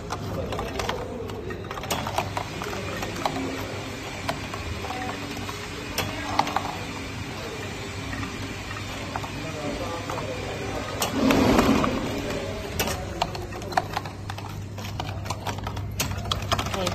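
Electronic candy counting machine running: its vibratory bowl feeder hums steadily while gummy candies tick and click down the counting chute into plastic cups, five to a batch. A louder clatter about eleven seconds in comes from the cups being handled.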